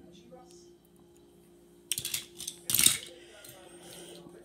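Handling noise close to the microphone: two short bursts of scraping and clatter, about two and three seconds in, as the recording device is jostled and the toy cars are swapped in hand.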